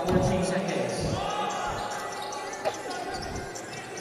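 A basketball bouncing a few times on a hardwood court, echoing in a large, near-empty arena.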